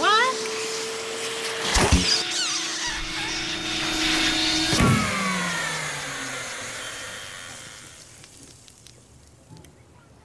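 Canister vacuum cleaner running with a steady whine, jolted by a clunk about two seconds in and another about five seconds in. Its motor then drops in pitch and winds down, fading out by about eight seconds in, with high squeaky glides and crackle over the first half. The vacuum is breaking down: it is left smoking.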